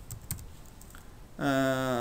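Computer keyboard keys clicking faintly as a few characters are typed. About one and a half seconds in, a man's voice holds one steady, drawn-out note, the loudest sound here.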